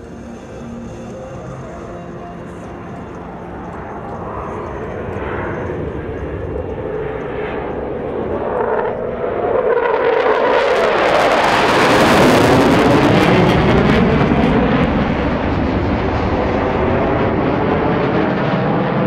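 Jet noise from two F-15J fighters' twin turbofan engines in a low pass, one slow with gear down and one overtaking it at high speed. The sound builds gradually, then rises sharply about ten seconds in to a loud, sweeping, phasing whoosh as the fast jet passes, and stays loud through the end.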